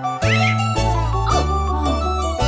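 A small child's crying wails, sliding in pitch and mostly falling, over bright children's-song backing music.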